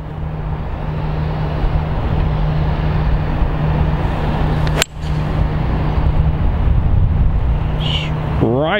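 A golfer's four iron striking a ball off the tee: a single sharp crack just under five seconds in, over a steady outdoor rumble.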